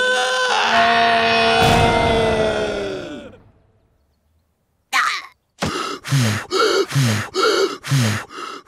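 A cartoon hare character gives a long, drawn-out scream at a steady pitch, which fades out about three seconds in. After a second of silence comes a fast run of short voiced bursts, each dropping in pitch, about two or three a second.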